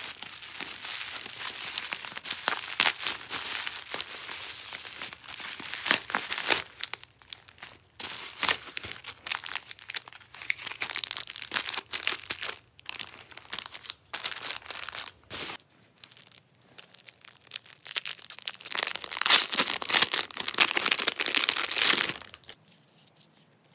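Clear plastic packaging crinkling and rustling in irregular bursts as packs of photocards are handled and unwrapped, loudest near the end.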